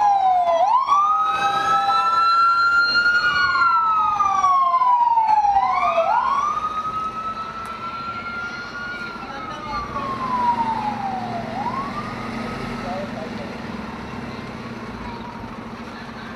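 Emergency vehicle sirens wailing, each cycle a quick rise in pitch and then a slow fall, repeating about every five seconds; two sirens overlap at first, then one carries on alone and fades out about three-quarters of the way through, leaving a low steady hum.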